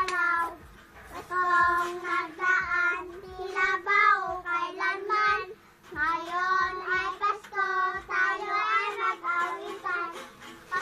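A young child singing, in phrases of held, slightly wavering notes with short pauses between them.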